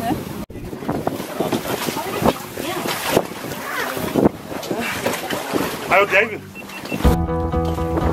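Voices of people talking and calling out on a shark cage diving boat, over a steady background noise, with a brief drop-out about half a second in. Music begins near the end.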